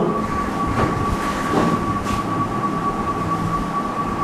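A steady mechanical drone with a constant high whine and a low hum underneath, unchanging throughout.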